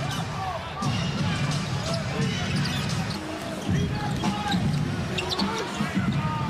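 Basketball bouncing on a hardwood court during live play, with the hubbub of the arena behind it.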